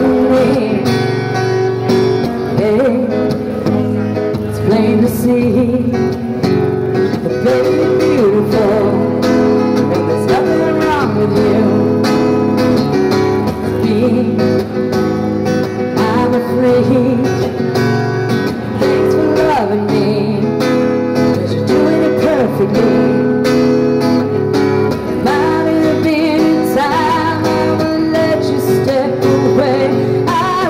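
A woman singing a song while strumming her own acoustic guitar accompaniment, played live.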